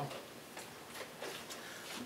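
A lull with a few faint, light clicks, irregularly spaced, over low room hiss.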